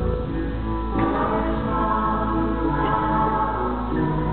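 Live music: several voices singing together in sustained harmony, like a small choir.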